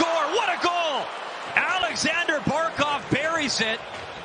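Speech: a hockey broadcast commentator's voice calling the goal, with arena sound under it.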